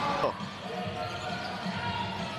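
A basketball dribbled on a hardwood court, low thuds under steady arena crowd noise.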